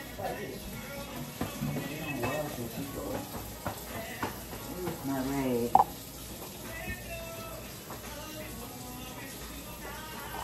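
Indistinct voices talking in the background, off-microphone, with a single sharp click a little before six seconds in.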